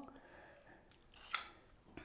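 A metal spoon clinks once, short and sharp, against a stainless steel pot while cooked vegetables are spooned out of it onto pasta. The rest is faint.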